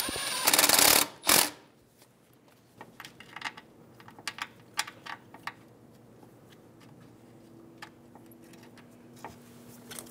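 A cordless power tool spinning a socket to run down and snug a bolt on the strut bracket: one dense, rattling burst of under a second at the very start, then a second short burst. After that, scattered light clicks and taps of gloved hands handling metal brackets and clips.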